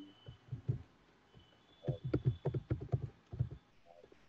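Computer keyboard typed on in a quick burst of key taps, starting about two seconds in, with a few single taps before it: a Bible passage being looked up.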